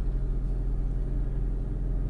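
Steady low rumble and hum of a car heard from inside the cabin.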